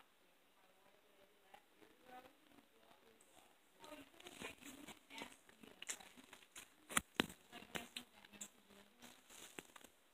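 Faint crinkling and rustling of a paper napkin being handled, with a run of sharp crackly clicks from about four seconds in, two loudest ones close together past the middle.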